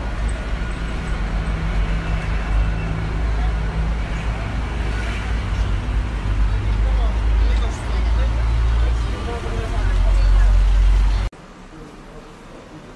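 Roadside noise recorded on a phone: a heavy low rumble from vehicles, with people's voices in the background. It cuts off abruptly near the end.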